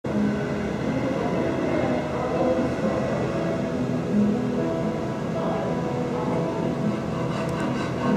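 A steady low rumble with quiet background music of held notes over it.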